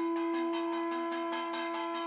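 A conch shell blown in one long, steady note over the quick, steady ringing of a hand bell: the sound of the aarti being performed.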